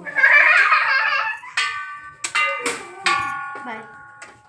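A few struck, bell-like chimes in the second half, each leaving several steady tones ringing on and slowly fading.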